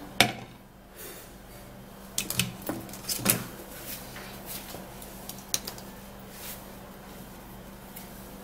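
A few scattered light knocks and clicks of kitchen containers and utensils being handled, over a faint steady low hum.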